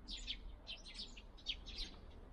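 Small songbirds chirping faintly, a quick run of short, high chirps several times a second.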